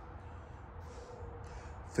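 Low steady background hum with a faint steady tone, and a soft breath about a second in during a pause in talk.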